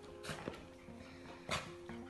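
Faint background music of held notes, with a few light clicks, the sharpest about one and a half seconds in.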